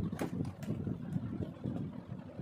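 Low rumbling background noise, with two light clicks in the first second as a plastic toy cow is shaken and handled.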